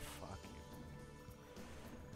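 Online video slot's big-win music, fairly quiet, with steady held tones and a short swish right at the start.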